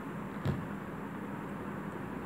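Steady low background hum with one short soft thump about half a second in.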